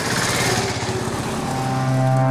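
A small engine running, with rapid, even firing pulses under a loud swell of noise.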